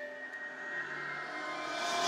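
Opening of a music video's soundtrack: a sustained chord of steady tones under a rushing swell that grows steadily louder and brighter.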